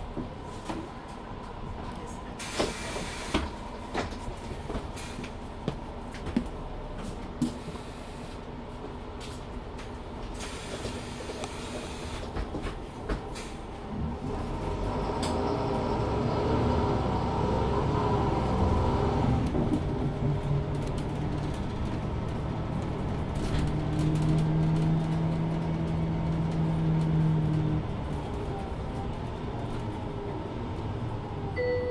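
Inside a Mercedes-Benz Citaro C2 LE city bus: scattered rattles and clicks over a low running noise, then about halfway through the rear-mounted Daimler OM 936 h six-cylinder diesel pulls harder as the bus accelerates. Its drone grows louder and steadier, then drops back shortly before the end.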